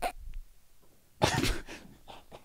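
A man's short, breathy burst of laughter a little over a second in, lasting about half a second.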